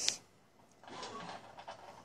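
A short hiss at the start, then soft scraping and rustling against plastic: a Russian dwarf hamster shifting about among hoarded food pieces inside a clear plastic tube.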